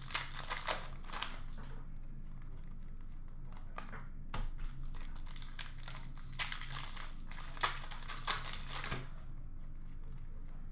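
Foil hockey card pack wrapper crinkling as it is handled and torn open by hand, with the cards inside rustling, in several bursts.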